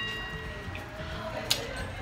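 The ringing tail of an edited-in cartoon sound effect, a falling whistle-like glide, fades out as a few steady high tones over a faint background. A single sharp click comes about one and a half seconds in.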